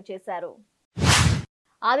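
A short whoosh transition sound effect, about half a second long, marking the change from one news item to the next. Before it a woman's newsreading voice trails off.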